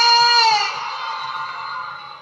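A single sung note from one voice, sliding up into pitch and held for about half a second, then fading away over the next two seconds as the last note of a song.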